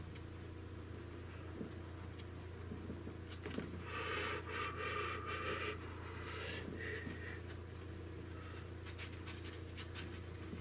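Paintbrush scrubbing and dabbing oil paint onto a 3 mm MDF panel: a scratchy run of strokes for a couple of seconds in the middle, with a few lighter strokes after it, over a steady low hum.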